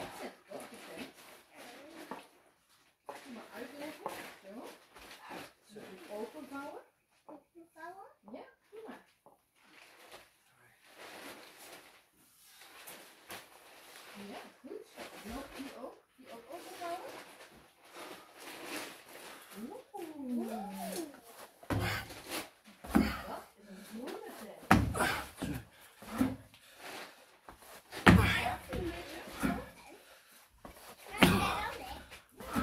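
People talking close by, a child among them, with several heavy thumps in the last eight seconds or so.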